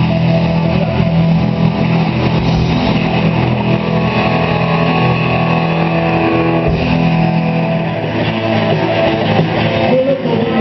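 A rock band playing live: electric guitars over bass guitar and drums, loud and continuous.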